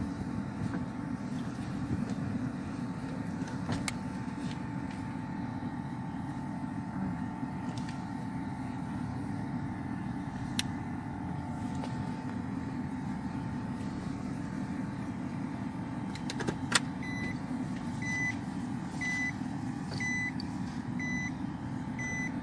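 Car cabin noise while driving: a steady low engine and road rumble with a faint steady whine. About 17 seconds in there is a sharp click, and then a car's electronic warning chime starts beeping, short high beeps about one and a half a second.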